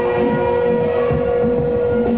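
Live electronic-folk music from laptop electronics and electric guitar, carried by one long held note with a busier low part beneath it.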